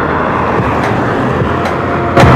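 Steady street traffic noise, with a motor vehicle running nearby and a few faint clicks.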